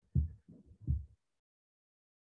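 Three brief, muffled, low-pitched vocal sounds from a man within the first second, then dead silence.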